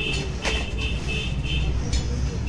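A steady low hum with a high chirping tone, broken into short pieces about four times a second, over it. There is a short knock about half a second in.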